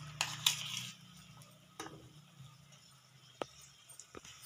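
Besan-coated peanuts frying in hot oil in a kadhai: a light sizzle with scattered crackles. Two sharp clicks come in the first second, then the sizzle fades to faint crackling with an odd tick.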